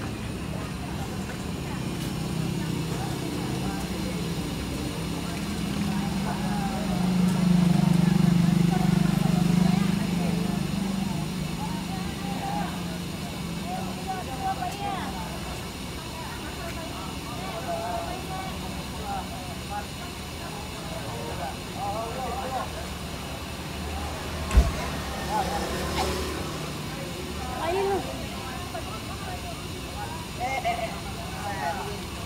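A bus diesel engine idling with a steady low hum. The rumble swells louder for several seconds about a quarter of the way in, under the chatter of passengers boarding, and there is one sharp knock near the end.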